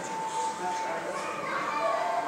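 Children's voices and play sounds in a school gym hall, with a thin steady high tone underneath.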